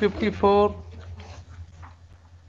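A person's voice: the end of a spoken phrase, then a short steady held vowel about half a second in. After that only a steady low hum remains on the courtroom's video-conference audio.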